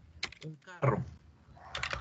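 Computer keyboard keys clicking as a few characters are typed: a quick cluster of keystrokes just after the start and another near the end. A short spoken sound in the middle is the loudest part.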